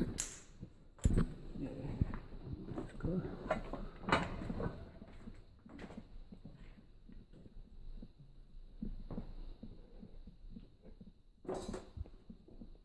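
Footsteps and scuffing in an echoing concrete tunnel, with a few sharp knocks: one near the start, one about a second in, one about four seconds in and one near the end. Faint voices and breathing can be heard under the movement.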